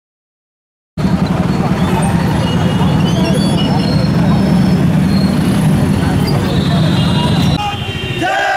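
Loud street noise of a crowd gathered beside traffic: many voices mixed with vehicle engines, with a few short high tones. It starts suddenly about a second in and changes abruptly near the end.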